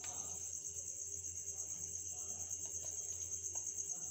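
A steady, high-pitched, evenly pulsing insect trill, with a few faint soft taps as cucumber slices are set on the burgers.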